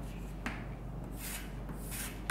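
Chalk scratching and tapping on a chalkboard as letters are written and a line is drawn under them, in short strokes.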